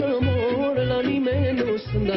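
Romanian folk song: a male singer's wavering, heavily ornamented melody over a band with a steady bass alternating between two notes about three times a second.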